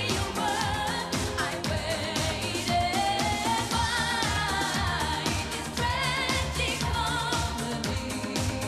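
Pop song with a woman singing over a steady dance beat.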